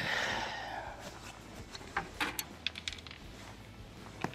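A soft breathy hiss at the start, then a scatter of light, sharp clicks and taps a couple of seconds in: handling noise as a freshly caught crappie and tackle are handled in a boat.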